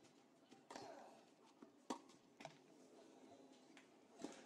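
Near silence: faint tennis-court ambience between points, with a few short faint knocks, the loudest about two seconds in.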